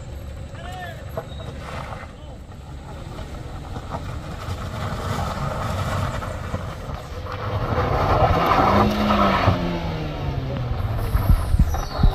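A small MPV's engine pulls under load up a steep, rough gravel slope and grows louder as it approaches. Its revs rise and fall around eight to nine seconds in, over the crunch of tyres on loose stones.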